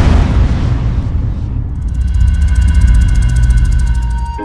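Cinematic trailer sound design: a big swelling whoosh peaks at the start and gives way to a deep, steady rumble. About one and a half seconds in, a fast even flutter with held high tones comes in over the rumble.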